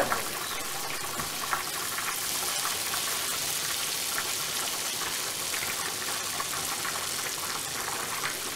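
Pasta al tonno cooking in a pan on the stove: a steady sizzling hiss, with a few faint ticks.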